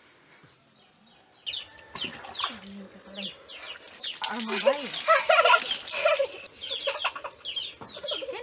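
Farmyard sounds with chickens clucking and birds chirping begin after a faint first second or so. From about halfway, water poured from a vessel splashes loudly over a child being bathed, while a child's voice is heard.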